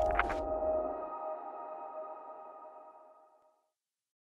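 The end of a short musical logo sting: a few last sharp chime hits, then several held chime tones over a low bass. The bass stops about a second in, and the held tones fade out to silence by about three and a half seconds.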